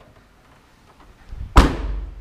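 A 2017 GMC Terrain's rear liftgate slammed shut: one loud thud about one and a half seconds in, with a short low rumble after it.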